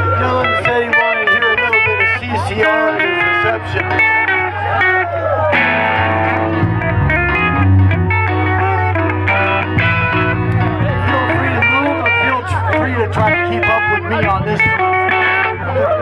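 Live rock band playing: electric guitar over a steady bass line, with a voice coming and going.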